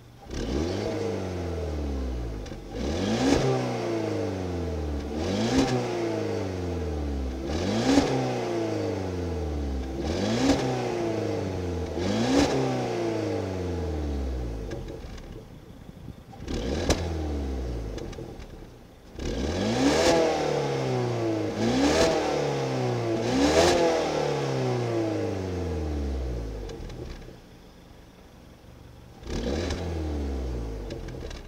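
Peugeot 207's turbocharged 1.6 THP four-cylinder engine being revved again and again. There are about a dozen quick revs, each climbing fast and sinking slowly back toward idle. A short lull falls about halfway through, and a quieter idle near the end comes before one last rev.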